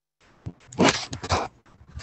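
A video-call participant's microphone opening out of digital silence, picking up two short, loud noisy sounds about half a second apart before she speaks.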